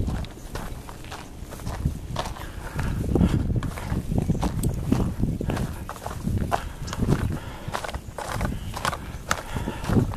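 Footsteps of a hiker walking on a dirt trail, with scattered sharp scuffs and knocks from handling the camera.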